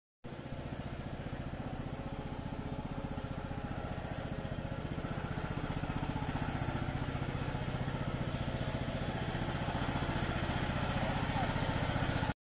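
John Deere EZtrak zero-turn riding mower's engine running steadily under way, with a fast even pulse.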